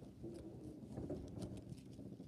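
Faint handling of paper trading cards, with light irregular clicks and rustling as the cards are moved through the stack.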